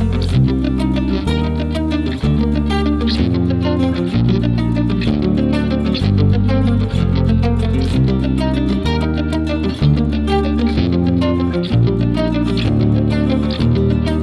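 Electric guitar playing a run of picked notes over an accompaniment of low sustained bass notes that change about once a second, with a steady beat.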